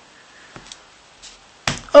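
A deck of playing cards being cut and handled on a cloth close-up mat: a few faint card clicks, then a sharp tap near the end as the cards are set down.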